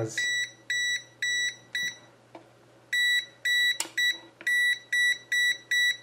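Venlab VM-600A digital multimeter's non-contact voltage (NCV) detector beeping: a series of short, high, identical beeps, about two a second. The beeping signals that it senses live voltage at the phase side of a switched-on mains power strip. It stops for about a second near the middle, then starts again.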